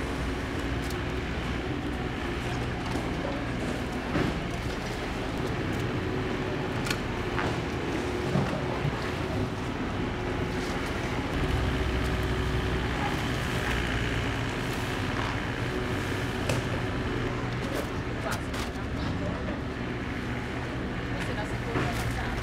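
Outdoor flood-cleanup din: a heavy machine's diesel engine runs steadily under scattered scrapes and knocks of shovels and brooms working wet mud, with indistinct voices around.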